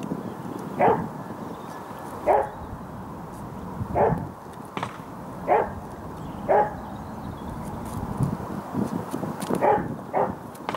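A dog barking: about six short barks at uneven intervals, roughly one every one to two seconds.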